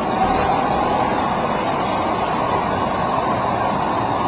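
San Diego Trolley light-rail train running along street tracks: a steady rumble.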